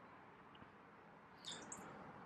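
Near silence with faint outdoor room tone, broken about one and a half seconds in by one short, faint high-pitched chirp, like a small bird's call.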